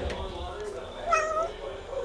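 Tortoiseshell cat giving one short meow, about a second in.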